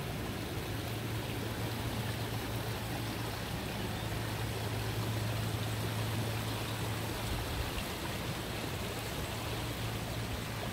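Steady rush of running water from a backyard pond's stream, with a low steady hum underneath.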